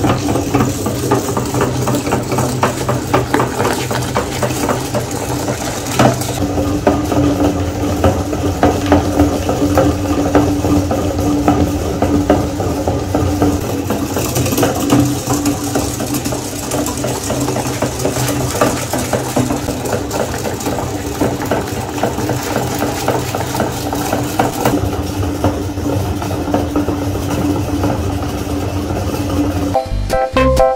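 Metal meat grinder working slime through its screw: a steady mechanical hum with a dense stream of small clicks and rattles.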